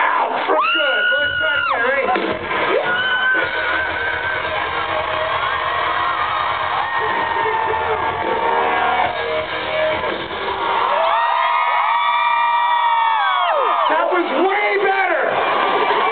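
Rock-concert crowd cheering and yelling to the singer's call to make noise, with long held shouts near the start and again from about eleven seconds in, over a low rumble from the stage.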